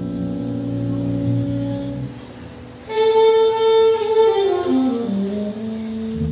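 Live jazz band: a sustained chord rings for about two seconds, a short lull follows, then the saxophone comes in about three seconds in with a loud held note and winds down in a falling phrase.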